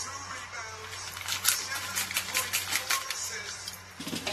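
Popping candy crackling in the mouth: many small, sharp, irregular pops as it dissolves on the tongue, the strongest about a second and a half in. Quiet background music runs underneath.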